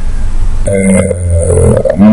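A man's drawn-out hesitation sound, a low steady "uhh" held for just over a second, starting a little over half a second in.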